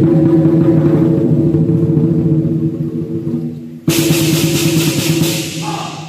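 Chinese lion dance drum played in a fast, continuous roll. About four seconds in it breaks off for a moment, then comes back with a loud crash of cymbals and gong that rings on and dies away near the end.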